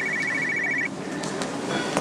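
Mobile phone ringing with a fast, warbling two-tone electronic trill. It lasts about a second and stops as the call is answered.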